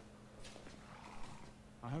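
A horse snorting faintly, one breathy sound lasting about a second, with a man's voice starting at the very end.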